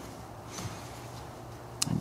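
Quiet room tone with a faint steady low hum, and one short click near the end.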